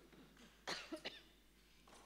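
A short cough about two-thirds of a second in, with a smaller one just after, then quiet room tone.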